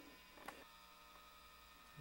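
Near silence: room tone with a faint steady hum and one small click about half a second in.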